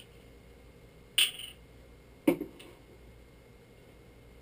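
A short slurping sip from a freshly opened can of fruit-punch energy drink about a second in, followed by an appreciative hum ('mm').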